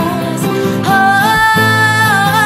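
Live acoustic pop performance: a female voice singing over acoustic guitar and piano. After a brief instrumental gap she comes back in about a second in, holding a note with vibrato.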